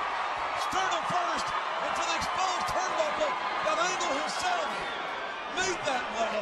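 Indistinct voices with no clear words, mixed with scattered short clicks.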